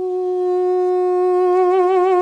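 Armenian duduk, a double-reed woodwind, playing one long held note; a gentle vibrato comes into the note about halfway through.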